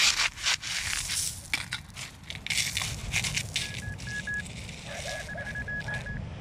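Shingle pebbles crunching and scraping as a gloved hand digs through them. A handheld pinpointer beeps in two runs of short, rapid, high beeps in the second half, signalling a metal target in the hole.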